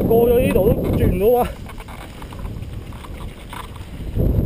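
Wind and handling rumble from a mountain bike moving over rock, with a brief wavering high-pitched sound during the first second and a half.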